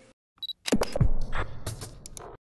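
Sound effects of an animated station ident: a short high beep about half a second in, then a quick run of sharp clicks and sweeps, some falling in pitch.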